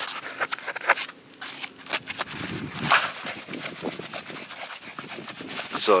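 A sheet of Top Gun vinyl boat-cover material being gripped, folded and rubbed by hand, the stiff sheet crackling and rustling in irregular bursts.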